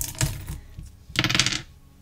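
A few light clicks and taps, then a short, bright scraping or jingling sound just over a second in.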